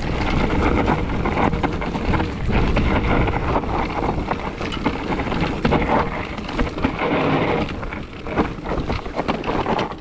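Orbea Rise mountain bike descending fast over loose stone: tyres crunching on rock and the bike clattering with many small knocks throughout, under wind rushing over the microphone.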